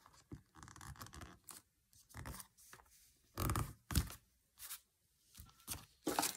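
Paper and card being handled: a series of short, irregular rustles and scrapes as a small piece of patterned paper is folded and pressed onto a card page, with two louder rustles a little past halfway.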